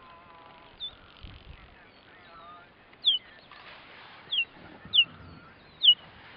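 Cheetahs chirping: a run of short, high-pitched, bird-like calls, each falling in pitch, about five of them, coming closer together toward the end.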